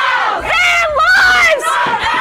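Protesters shouting chant-like slogans in loud, high-pitched yells, several voices overlapping.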